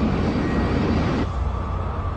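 Spaceship engine sound effect for a fleet setting off: a rushing noise that drops back a little over a second in, over a steady low rumble.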